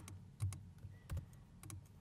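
Faint computer keyboard typing: a scattered, irregular run of key clicks as text is entered into a field.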